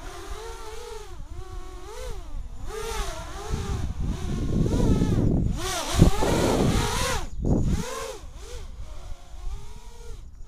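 A 3D quadcopter's motors and propellers whining, the pitch rising and falling over and over as the throttle changes during aerobatic flight, with a sharp knock about six seconds in.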